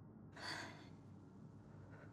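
A single soft, breathy exhale like a sigh, about half a second long, starting about a third of a second in. It sits over a faint, steady low hum.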